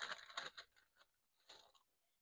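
Faint rustling of a small glassine bag and a paper card being handled as the card is drawn out: a few soft crinkles in the first half-second, then one more about a second and a half in.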